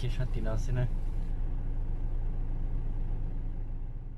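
Steady low rumble of a vehicle driving, heard from inside its cabin, easing off a little near the end.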